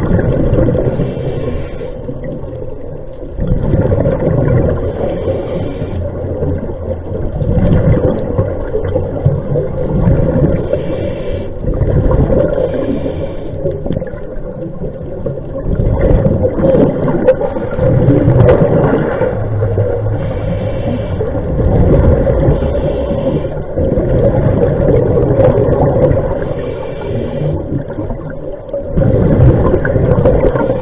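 A scuba diver's regulator heard underwater: loud rushing surges of exhaled bubbles every few seconds, with quieter stretches between breaths.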